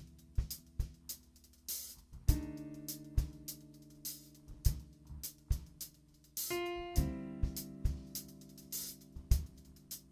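Live smooth-jazz band playing: a steady drum-kit groove with hi-hat and cymbals over electric bass and held keyboard chords. A brighter melody line comes in about six and a half seconds in.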